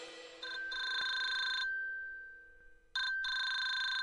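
Electronic telephone ring sounding twice, each ring about a second long and fading away, the second starting near three seconds in.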